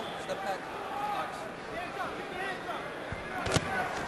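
Boxing arena crowd murmur with scattered shouted voices. A sharp thud of a punch landing comes about three and a half seconds in, with a fainter one just before it.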